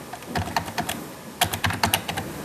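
Computer keyboard typing: quick runs of keystrokes in two bursts, keying in a number.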